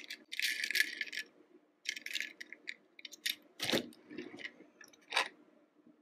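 Die-cast toy cars clicking and rattling as they are handled and set down on a hard tabletop, with a few sharper knocks, the fullest about three and a half seconds in.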